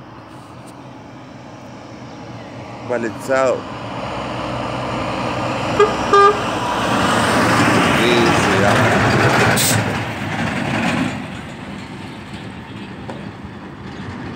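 Scania semi-truck approaching, passing close and pulling away, its engine and tyre noise swelling to a peak and then fading. The truck's horn gives two short toots about six seconds in, and there is a brief hiss near the end of the pass.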